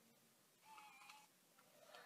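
Near silence: room tone, with a faint short steady tone about a second in.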